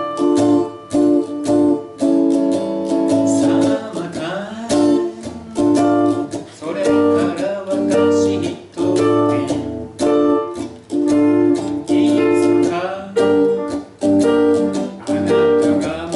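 Electric guitar strummed in short, choppy chords about twice a second, with keyboard accompaniment and a singing voice.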